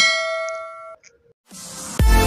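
Notification-bell 'ding' sound effect from a subscribe-button animation: one bell-like strike that rings for about a second and cuts off suddenly. A hissing whoosh swells up near the end.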